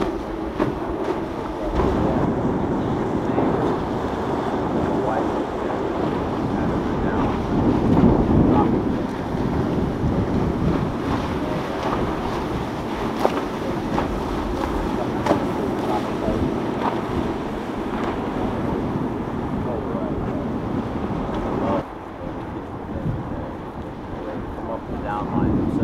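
Wind buffeting the microphone over ocean surf, with the low running of boat engines mixed in and faint background voices. The rush swells louder about eight seconds in and drops back near the end.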